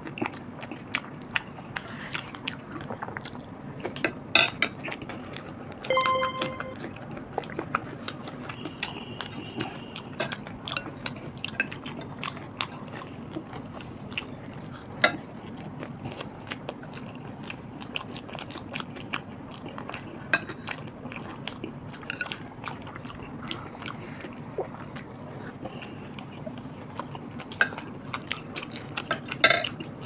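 Close-miked eating of crispy papdi chaat: crunching and chewing, with many short clicks and scrapes of spoons on metal plates. A brief ringing tone sounds once about six seconds in.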